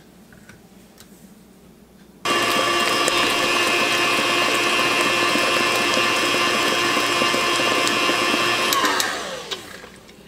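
KitchenAid stand mixer switched on about two seconds in, running steadily with its flat beater turning through thick batter. It is switched off near the end, and its pitch falls as the motor spins down.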